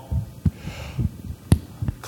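A few dull low thumps and one sharp click about a second and a half in, bumping or handling noise on the podium microphone.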